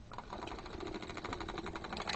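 Hand-cranked circular sock machine turning, its latch needles clattering in a fast, even run of about a dozen clicks a second as the cams pass them. These are the first turns of knitting just after cast-on, with the sock weights hung.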